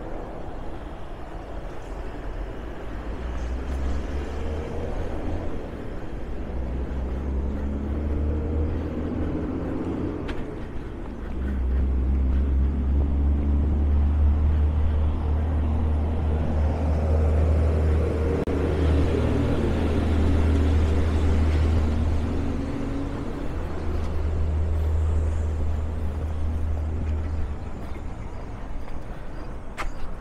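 Road traffic on a city street, with vehicles passing and their engines rising and fading twice. Under it runs a heavy low rumble that grows louder about a third of the way in.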